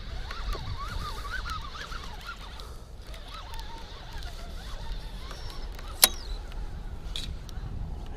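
Faint bird calls, wavering and broken into short notes, over a low steady rumble, with one sharp knock about six seconds in.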